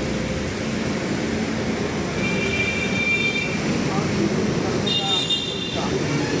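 Indistinct voices over a steady outdoor background hum, with two brief high, steady tones, one about two seconds in and another about five seconds in.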